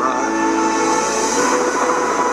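Film trailer soundtrack: a sustained chord of several steady tones held without a break.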